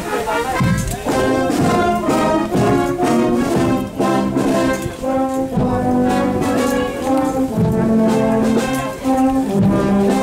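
Village brass band (fanfare) playing a processional march, the brass holding sustained chords over a steady beat.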